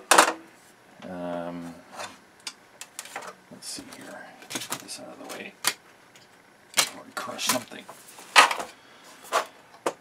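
A metal server heatsink being handled in a sheet-aluminium chassis: irregular clanks, taps and light scrapes as it is set in place and moved for a test fit, the sharpest knocks right at the start and about eight seconds in. A short hummed "mm" a second in.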